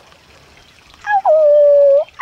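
A woman's high-pitched singsong call, a wordless held "ooh" on one steady note, starting about halfway through and held for about a second.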